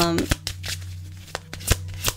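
Tarot cards being handled: a few sharp, irregular clicks and snaps of the cards, over a steady low electrical hum.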